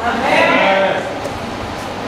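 A single drawn-out vocal cry from a person, rising and then falling in pitch and lasting about a second. After it, steady background noise continues.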